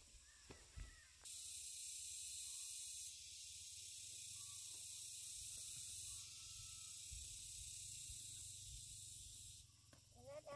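A steady high-pitched hiss or buzz starts abruptly about a second in, shifts in level twice, and cuts off just before the end, over faint rustles and knocks.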